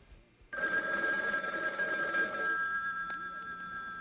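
Telephone ringing: one long, steady ring that starts suddenly about half a second in and lasts until the speech returns.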